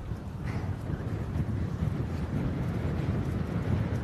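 Wind buffeting an outdoor microphone: a steady low rumble with a faint hiss above it.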